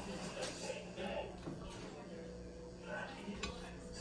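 Large scissors snipping through wet waterslide decal film on a stainless steel tumbler: a few faint cuts.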